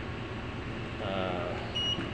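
One short, high electronic beep near the end from the ship's bridge console equipment, over a steady low machinery hum.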